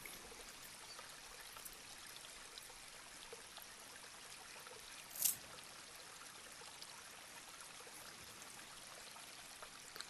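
Faint steady hiss of room tone, with one short, high, hissy sound about five seconds in.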